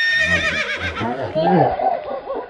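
Pony whinnying: one high call with a quavering pitch that starts at once and falls away over about a second.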